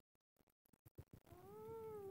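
Faint scattered clicks and rustles, then, past the middle, a single high-pitched drawn-out call that rises and then falls in pitch, lasting under a second.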